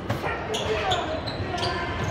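Football being kicked and bouncing on a sports hall floor: three sharp knocks that echo in the hall, with players' and spectators' voices between them.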